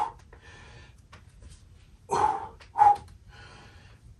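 A person breathing hard while exercising, with two short, loud voiced sounds a little after halfway.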